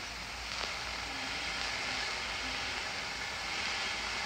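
Steady hiss with a low hum from the soundtrack of a 1932 sound film, with no speech.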